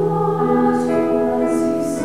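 Women's choir singing held chords in several parts, with the hiss of sung 's' consonants a few times.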